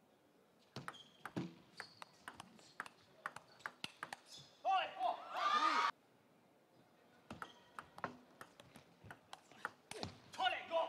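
Table tennis rally: a plastic ball clicking off rubber bats and the table in quick, irregular knocks for a few seconds. The rally ends in a loud shout about five seconds in. Sparser ball taps follow as the ball is readied for the next serve.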